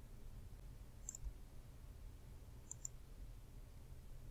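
Faint computer mouse clicks: one about a second in, then two in quick succession near three seconds, over a low steady hum.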